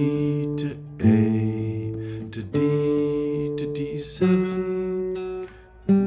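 Nylon-string classical guitar playing a slow chord progression in D minor: a chord is struck about every one and a half seconds and left to ring until the next.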